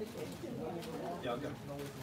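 Indistinct voices of several people talking at once, a murmur of overlapping conversation with no clear words.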